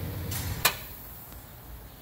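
A single sharp metal click as a wrench knocks against the rear control arm's eccentric toe-adjustment bolt, over a faint low hum that fades away.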